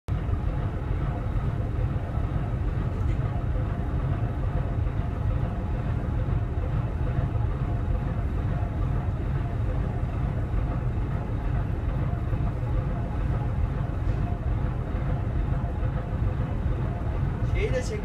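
Steady low drone of a ship underway, its engine running with a faint steady hum, unchanged throughout.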